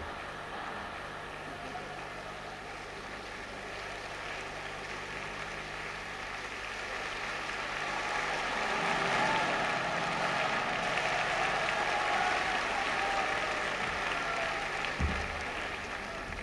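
Large audience applauding steadily, swelling about halfway through to its loudest and easing off near the end.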